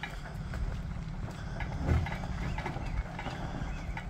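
Low, steady rumble of a tow vehicle's engine pulling a trailer-mounted portable sawmill slowly away down a gravel drive, with a dull thump about two seconds in.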